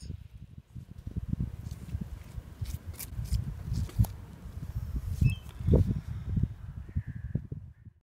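Wind buffeting the microphone of a handheld camera outdoors, an uneven low rumbling with gusty peaks, strongest near the end.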